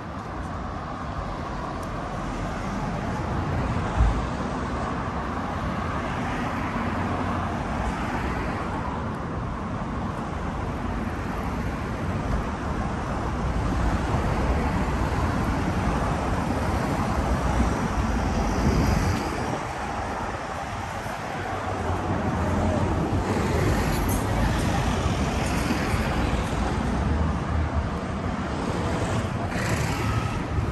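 Road traffic passing on a city street, a continuous wash of tyre and engine noise that swells and eases as vehicles go by. A single sharp knock comes about four seconds in.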